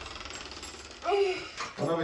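Speech over faint room noise: a short high-pitched voice, like a child's, about a second in, then a man's voice starting near the end.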